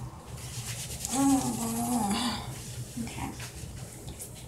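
A woman's voice making one drawn-out wordless sound, about a second long, starting about a second in, over a steady low hum.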